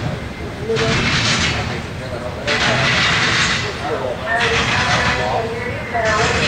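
Intermodal freight train rolling past: a steady low rumble with rushes of hissing rail noise that swell and fade about every one and a half to two seconds as the cars go by.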